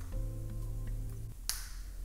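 Background music with soft sustained chords, and about one and a half seconds in a single sharp snap, the metal snap clip of a clip-in hair extension being pressed shut in the hair, with a few faint ticks of the clips being handled before it.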